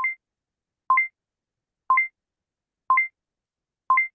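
Countdown-timer beeps: a short electronic blip once a second, five in all, each with a lower note followed at once by a higher one, ticking off the numbers of an on-screen countdown.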